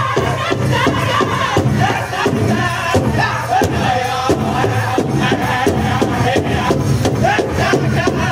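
Northern-style powwow drum group singing a victory song: several men chanting in high voices over a big drum struck in a steady beat.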